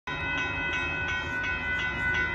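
Railroad crossing bell ringing steadily at about three strikes a second while the crossing gates are down, warning of an approaching train.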